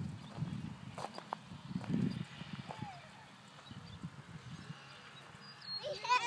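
Footsteps of someone walking along a wood-chip path, an irregular low crunching, with a few faint, distant children's voices in the first half.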